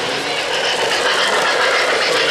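O-gauge model train rolling along three-rail track, a steady mechanical rattle and clatter of wheels on rail.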